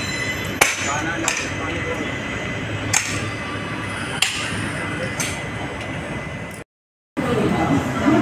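Steady running noise of a passenger train, with sharp clacks of the wheels over rail joints and points every second or so. The sound drops out briefly near the end.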